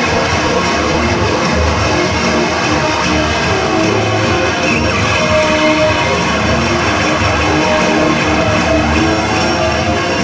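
Loud live band music without singing: a dense, steady, noisy wall of sound with a few held notes running through it.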